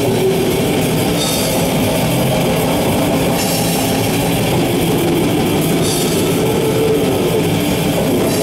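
Heavy metal band playing live, drum kit and guitars together, loud and dense without a break, with a bright crash coming every two seconds or so.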